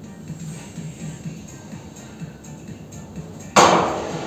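Background music plays quietly with a regular beat. About three and a half seconds in comes a sudden loud metallic clatter as the sheet-steel hood of a homemade mini tractor is swung shut.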